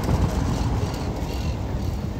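City street noise: a steady low rumble of traffic, with wind buffeting the microphone.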